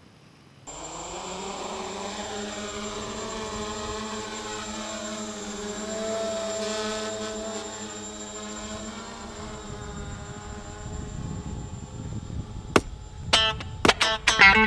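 Electric motors and propellers of a 450 mm carbon-fibre quadcopter whining steadily, the pitch lifting briefly about halfway. Near the end, plucked guitar notes of a music track come in.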